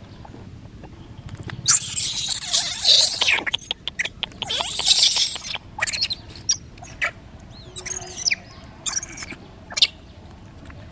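Young long-tailed macaques screaming and squealing as they wrestle: two long, loud bouts of high-pitched screams in the first half, then shorter squeaks and gliding calls.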